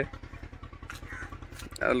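An engine idling, a steady low throb.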